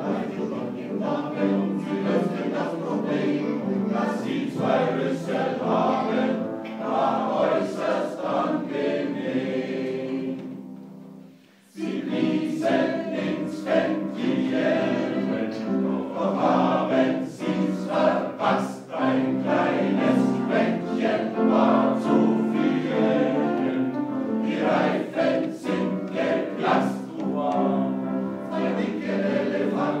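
Men's choir singing a blues number with upright piano accompaniment. About eleven seconds in the singing dies away into a short pause, then the whole choir comes back in at once.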